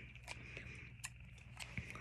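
Faint handling noise as a plastic straw and scissors are picked up and turned over: a few soft, scattered clicks and taps over low room noise.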